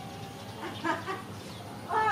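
Chicken clucking: a quick run of short clucks a little over half a second in, and a louder call near the end.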